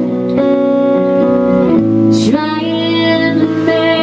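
Live country song: a female vocalist singing with acoustic guitar and band accompaniment. About two seconds in the voice moves to a new note and holds it with vibrato.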